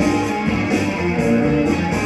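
A live band playing, with a strummed guitar to the fore over a steady bass line.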